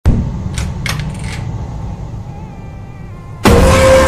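Horror-meme jump-scare sound effect: a low rumble with three short rattles that fades away, then about three and a half seconds in a sudden, very loud distorted blast as the creepy face appears.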